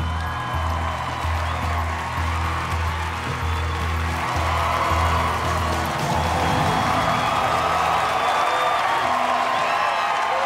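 Studio entrance music with a pulsing bass line, under a studio audience cheering, whooping and applauding. The bass drops out about six seconds in while the cheering carries on and swells.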